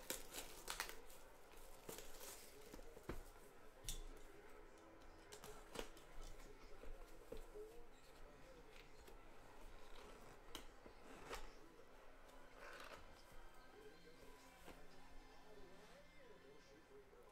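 Faint tearing and crinkling of the plastic wrap on a trading card box, with scattered small clicks and rustles as the packaging is handled.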